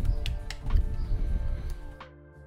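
Close handling noise from a phone being gripped and rubber bands stretched around it: a loud run of rubbing thumps and sharp clicks that stops suddenly at the end, with soft background music underneath.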